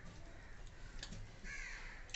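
A single short bird call, rising and falling, about one and a half seconds in, with a few faint clicks from eating at the table before it.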